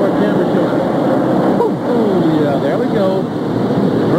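Steady drone of NASCAR Winston Cup V8 stock-car engines running laps at speed, with a TV commentator's voice over it.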